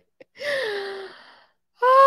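A woman's soft chuckles, then a drawn-out breathy exclamation that falls in pitch, like a gasp of delight. Near the end a louder voiced "oh" begins.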